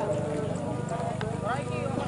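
Scattered distant shouts and calls from people outdoors, over a steady, rapid low pulsing.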